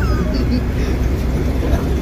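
City bus in motion, heard from inside the passenger cabin: a loud, steady low engine and road rumble.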